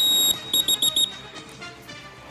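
Referee-style whistle blown: one long shrill blast, then about four quick short toots.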